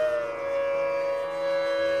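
Bansuri bamboo flute holding one long note that dips slightly in pitch at the start and then stays steady, over a sustained drone.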